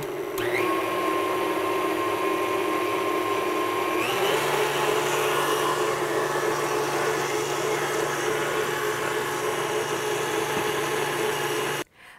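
KitchenAid tilt-head stand mixer with a wire whisk beating powdered sugar into hot caramel syrup for frosting. The motor spins up with a rising whine at the start, steps up to a higher speed about four seconds in, then runs steadily until it cuts off just before the end.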